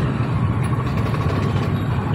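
Steady running of a moving two-wheeler's engine with road noise, heard from the rider's seat.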